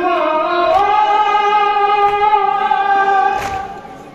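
A group of men chanting an Urdu noha (Muharram lament) in unison, holding one long note that fades near the end. Faint chest-beating (matam) thumps keep a slow beat about every second and a half.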